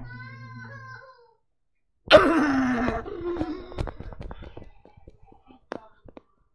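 A sudden, very loud scream about two seconds in, falling in pitch over about a second, then a string of sharp clicks and knocks. Before it, soft humming tones fade out after about a second.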